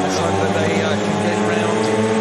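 Several 500cc speedway bike engines revving at the start tapes, held at steady high revs with slight wavering as the riders wait for the start.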